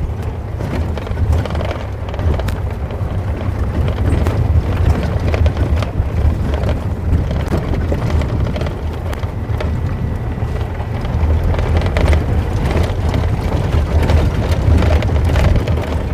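Open safari game-drive vehicle driving along a dirt bush track: a steady low engine and road rumble, with wind buffeting the microphone.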